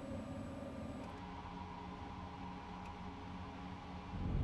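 Quiet room tone: a steady low hum and faint hiss with no speech, shifting slightly about a second in.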